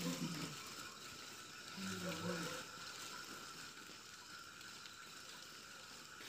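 Faint, brief voices of people talking: a few words at the very start and again about two seconds in, over a quiet, steady background hum.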